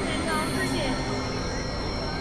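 Experimental electronic synthesizer drone and noise texture: a dense steady rumble and hiss under a few held high tones, with short warbling pitch glides sliding up and down through it.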